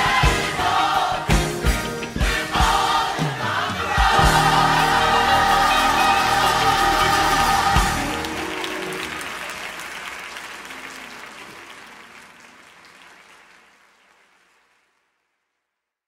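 Gospel choir and band ending a song: sung phrases over drum hits, then a final chord held from about four seconds in that slowly fades away to silence near the end.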